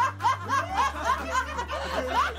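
A group of people laughing together, with quick repeated chuckles overlapping one another.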